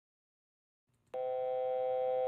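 Steady electronic alert tone of a few blended pitches, starting suddenly about a second in after silence and holding without change.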